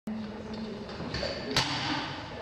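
A single sharp knock about one and a half seconds in, over the background noise of a weightlifting gym.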